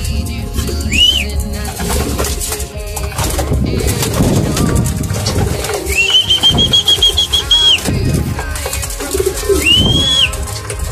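A flock of domestic pigeons cooing and flapping their wings around a feeder, with pecking and fluttering throughout. A high whistled note sounds about a second in, a longer warbling whistle follows from about six to eight seconds, and a third comes near the end.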